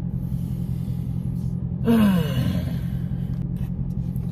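A man takes a breath in, then lets out a single voiced sigh that falls in pitch about halfway through. A steady low rumble fills the car cabin underneath.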